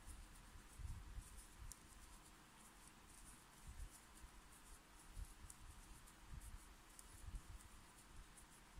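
Near silence with faint crocheting handling sounds: a metal crochet hook working yarn and hands moving the piece, giving scattered soft low bumps and small faint ticks.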